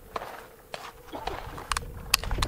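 A few short, sharp clicks of a Steyr L9A1 pistol being handled.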